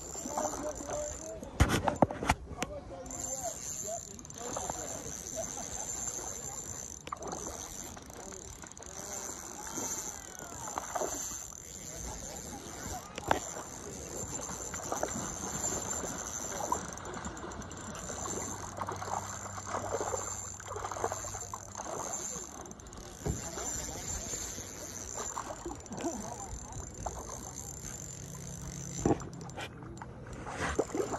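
Shimano Sienna spinning reel being cranked to bring in a trout hooked on an ultralight rod, the fish splashing at the surface, with a few sharp splashes about two seconds in.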